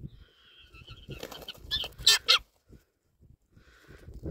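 Wingbeats of a Bonelli's eagle flying in and landing beside a tethered helmeted guineafowl, with harsh bird calls: one drawn-out call in the first second, then several loud, sharp notes about two seconds in.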